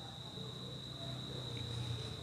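A steady high-pitched insect buzz, like a cricket's, with a faint low hum underneath that grows a little toward the end.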